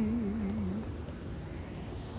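A man's voice holding a drawn-out, wavering hum that ends under a second in, followed by low, steady background rumble.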